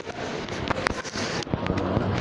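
Irregular sharp clicks and knocks, several in quick succession, over the general noise of a busy indoor shopping concourse.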